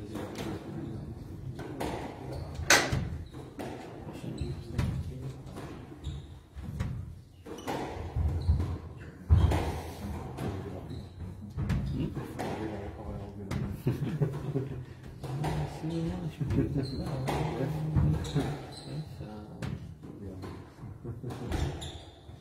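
Squash ball repeatedly struck by rackets and hitting the court walls during a rally: a series of sharp knocks echoing in a large hall, the loudest about 3 s and 9 s in, over a background murmur of voices.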